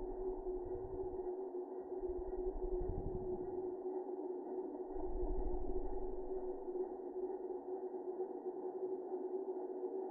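Night insect chorus slowed down by slow-motion playback, heard as a muffled, low steady drone, with dull low rumbles coming and going.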